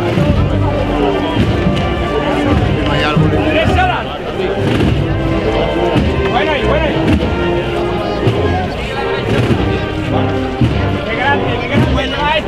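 A Spanish procession band of brass, woodwinds and drums playing a slow march, with held brass notes over a steady drum beat.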